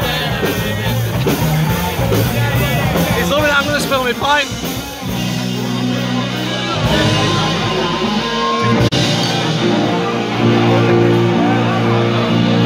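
Live rock band playing loudly, with guitars and singing, heard from within the crowd.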